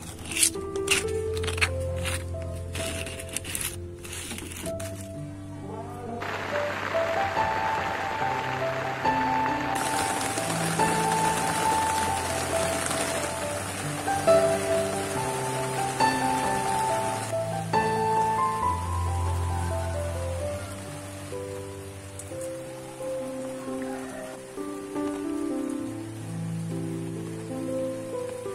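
Soft instrumental background music with held notes. Over it, a stone pestle clicks against a stone mortar in the first few seconds, and a rustling hiss of stirring runs through the middle.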